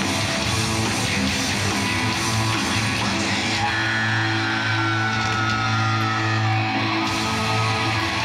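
Loud rock music with electric guitar over a steady bass line. A high sustained note slides slowly down in the middle.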